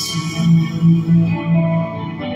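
Live worship band music between sung lines: a sudden bright hit at the start, then four held low notes in a row under sustained instrumental chords.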